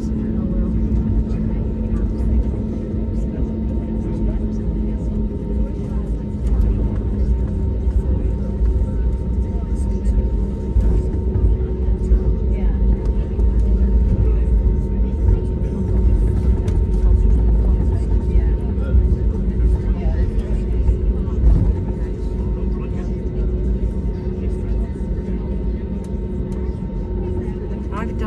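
Cabin noise of an Airbus A320neo taxiing: a steady low rumble with a constant engine hum, and passengers talking in the background.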